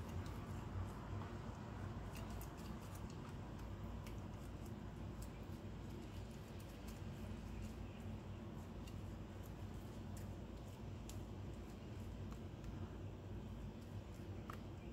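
Faint wet dabbing of a silicone pastry brush spreading beaten egg over raw yeast-dough buns, with scattered light ticks of the brush against the glass egg bowl, over a steady low hum.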